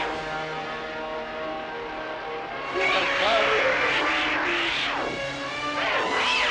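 Film monster roar sound effect: a screeching call that rises and falls in pitch, coming in about three seconds in and lasting about two seconds. Steady background music runs under it.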